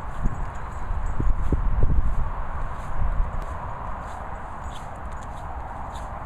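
Low wind rumble on an outdoor microphone with a few scattered soft thumps, loudest in the first two seconds and easing off after.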